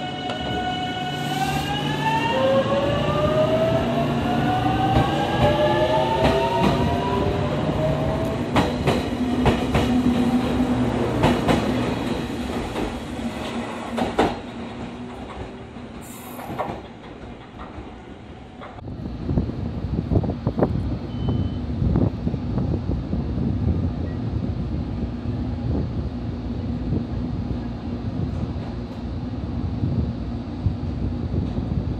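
JR Kyushu 813 series electric train pulling away: its inverter-driven traction motors give a whine of several tones that rises in pitch over about eight seconds as the train picks up speed, with wheels clicking over rail joints. After a quieter spell about halfway through, another 813 series train comes into the station, and a steady low hum with clicks from the standing train runs to the end.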